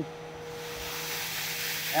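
Water rushing and splashing in a fish-farm tank, building up from about half a second in, over a steady low machinery hum.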